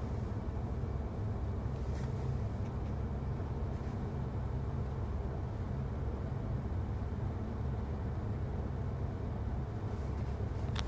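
Steady low hum inside a stationary car's cabin, with a faint tap about two seconds in as the touchscreen is pressed.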